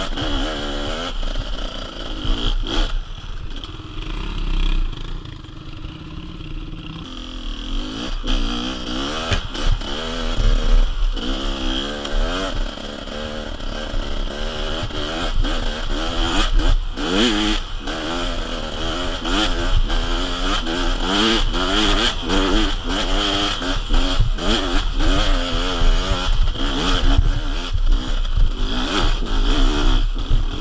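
Beta two-stroke enduro motorcycle engine on a steep, rocky hill climb, running steadier for a few seconds and then revving up and down repeatedly under load. Stones clatter and knock under the tyres.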